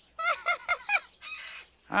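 Cartoon parrot squawking: a quick run of short, high squawks in the first second, then a noisier, raspy squawk.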